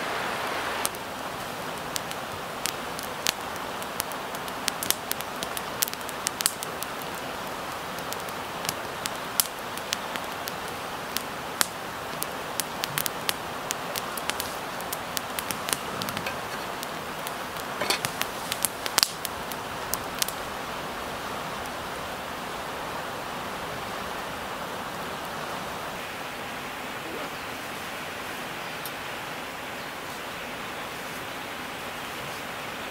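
Wood campfire crackling with many sharp pops over the steady rush of river water; the pops die away about two-thirds of the way through, leaving only the rush of the water.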